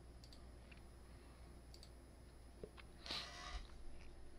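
A few faint, scattered computer mouse clicks, with a brief soft rustle about three seconds in.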